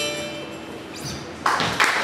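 The song's last harmonica and acoustic-guitar notes ring out and fade. About one and a half seconds in, a small audience starts applauding.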